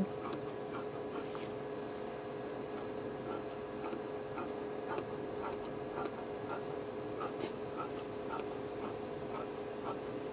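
Scissors cutting through two layers of fabric in a steady run of snips, about one to two a second, over a steady hum.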